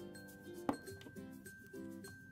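Light instrumental background music, with one sharp hard click about two-thirds of a second in as the small plastic toy figure is handled.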